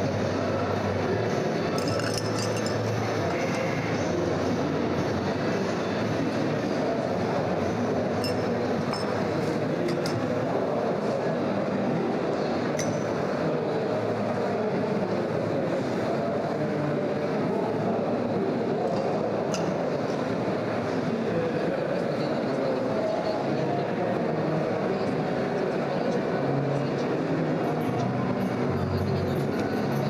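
Background music over a steady murmur of hall chatter, with a few sharp metal and glass clinks as espresso portafilters and a small glass are handled on the bar.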